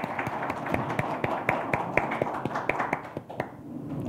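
Scattered applause from a small audience, with individual claps distinct, dying away about three seconds in.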